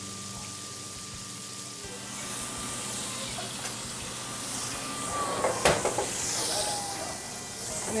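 Venison loin searing in hot olive oil in a skillet: a steady sizzle that grows louder about two seconds in, with a single sharp metallic knock about five and a half seconds in.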